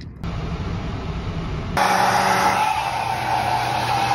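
A hair dryer running with a steady whir, which comes in louder about two seconds in after a quieter stretch of steady noise.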